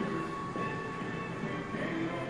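Background music with a steady wash of room noise.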